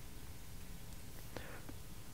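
Faint steady room hum with quiet pen strokes on paper, and two small ticks a little past the middle.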